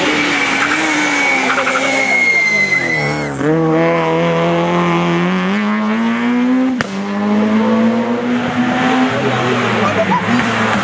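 Citroën C2 rally car's engine at high revs, dropping in pitch as it brakes and shifts down about three seconds in, then rising steadily as it accelerates past. A high thin tyre squeal runs over the first three seconds. After a sharp click near seven seconds, another rally car's engine is heard approaching.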